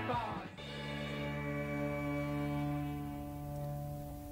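A punk rock record ending: the band stops about half a second in, and a final held chord rings on, slowly fading away.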